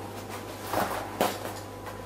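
A rucksack being handled: a brief rustle of its fabric, then a single sharp click just after a second in.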